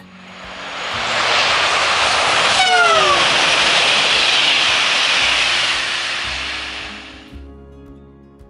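A high-speed electric train rushing past: a rush that builds over about a second, holds, then dies away near the end. About three seconds in comes a short horn blast that falls in pitch as the train goes by. Soft background music runs underneath.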